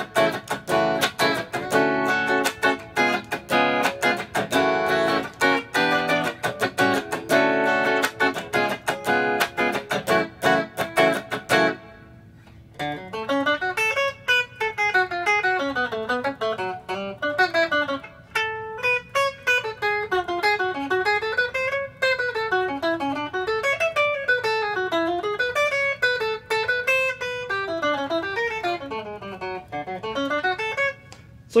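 Ibanez AZES40 electric guitar: a rhythmic strummed chord groove of quick, even strokes for about twelve seconds. After a short pause comes a single-note melodic solo whose lines rise and fall.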